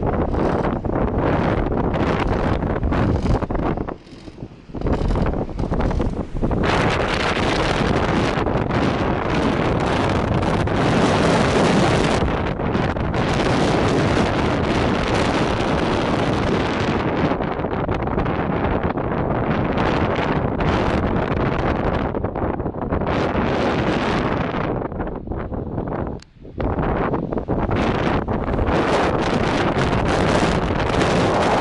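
Strong wind buffeting the microphone in gusts, a loud rushing noise with two brief lulls, one about four seconds in and one near the end.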